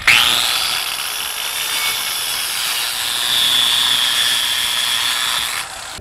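A 10,000 RPM angle grinder fitted with a circular-saw blade spins up with a rising whine and cuts into the end of a cedar boat plank. The steady high whine and cutting noise stop suddenly about five and a half seconds in.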